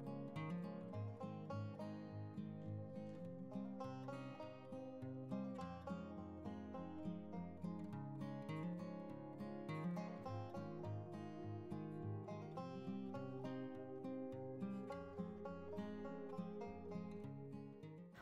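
Quiet instrumental background music: plucked acoustic guitar in a country style.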